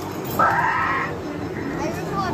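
Amusement arcade din with a short electronic whinny-like sound effect from a game machine, lasting about half a second and starting about half a second in.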